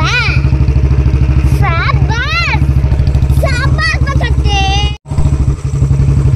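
A motorcycle engine running at low speed with a steady, even pulsing beat. A person's drawn-out calls rise and fall over it several times, and the sound drops out for a moment about five seconds in.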